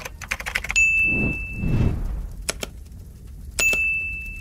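Subscribe-animation sound effects: a quick run of clicks, then a high bell-like ding held for about a second. Two sharp clicks follow, and near the end another click and the same ding as the pointer hits the notification bell.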